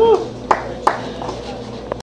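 Applause thinning out after a live song: a few scattered hand claps, with a short voice call at the very start.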